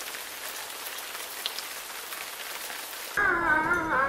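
Rain falling: a steady, even hiss that cuts off abruptly about three seconds in, when a louder voice takes over.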